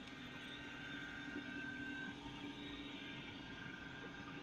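Steady hum of industrial plant machinery, with a low drone and a faint higher whine above it.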